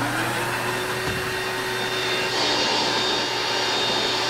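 Upright carpet-and-upholstery cleaning machine running, its motor spinning up at the start and then drawing steadily through the hose's hand tool as it is worked over a fabric sofa.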